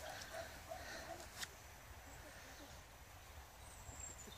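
Free-range hens clucking faintly in short, sparse calls, with a brief sharp click about a second and a half in over a low rumble of outdoor background noise.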